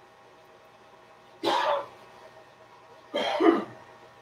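A woman clearing her throat with two short coughs, about a second and a half apart, the second one louder.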